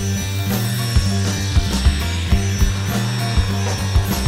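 Instrumental psychedelic space-rock: held bass notes that step in pitch, under drum strikes and a cymbal wash.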